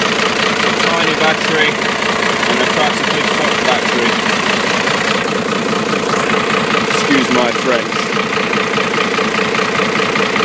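Truck engine idling steadily, just started with its own batteries disconnected, off a 12 V battery and ultracapacitor boost pack.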